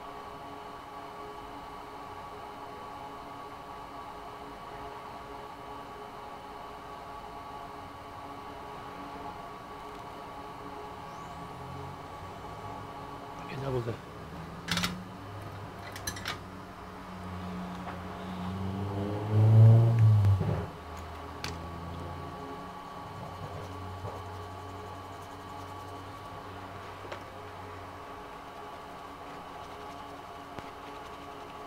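A steady electrical hum with several fixed tones, as on a soldering bench. A few sharp clicks come around the middle. A man's brief wordless murmur, rising in pitch, comes about two-thirds of the way through and is the loudest sound.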